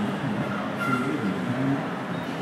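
Steady outdoor background hubbub, with indistinct low voices under it.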